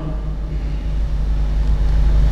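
A low, steady rumble with a faint hiss under it, swelling louder near the end: background room noise picked up by the lectern microphones.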